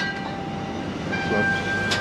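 Steady indoor shop hum with a thin steady whine, and a short sharp click near the end.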